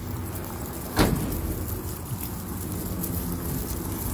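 A single sharp thump about a second in, echoing off concrete in a parking garage, over a steady low rumble.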